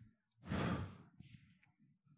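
A man's single breathy sigh into a handheld microphone, lasting about half a second.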